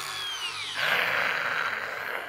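Hilti Nuron cordless angle grinder running free, its motor whine falling in pitch as it slows, then a louder rushing sound for about a second. The slowdown is the tool's built-in sensor cutting the motor, a safety feature meant to prevent kickback injuries.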